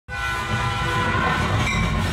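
Train horn sounding a steady chord over the low rumble of a train in motion, a sound effect that starts abruptly.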